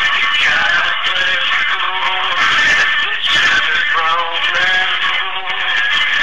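A man singing over music, the sound steady and squeezed into a narrow, mid-heavy band.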